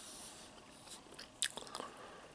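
A person chewing a mouthful of corned beef and cabbage with potatoes and carrots, with one sharp click about a second and a half in followed by a short run of crackly mouth sounds.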